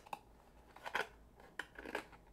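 A few brief scrapes and taps of thin cardboard as a card-stock deck box is handled, its lid flap worked open and the box turned over in the hands.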